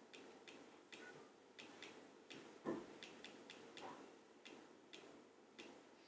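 Near silence with faint, short clicks about two a second: slides being stepped back one at a time. A brief soft sound stands out a little under three seconds in.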